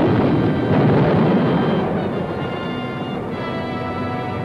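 Old film soundtrack of a battle: a loud rumbling blast of artillery fire and explosions mixed with a dramatic orchestral score. The blast fades after about two seconds, leaving the orchestra's held chords.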